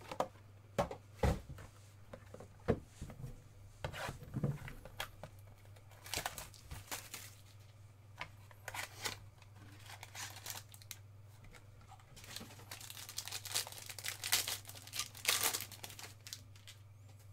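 A cardboard trading card box handled with a scatter of knocks and taps, then a sealed card pack's clear plastic wrapper torn open and crinkled in repeated bursts, heaviest near the end.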